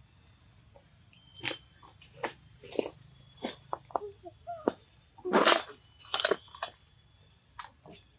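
Macaques giving a string of about ten short calls over several seconds, the loudest a little past the middle.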